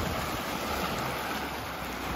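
Small sea waves washing and splashing over low rocks at the water's edge, a steady rush of water.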